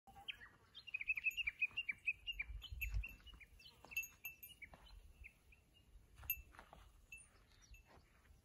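Small songbirds chirping, a rapid run of short falling notes that is thickest in the first three seconds and then thins to scattered calls. A faint low rumble sits underneath, strongest around the third second.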